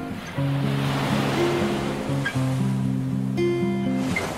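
Gentle background music of held notes, with a wave washing up on the shore that swells and then fades away across the middle of the clip.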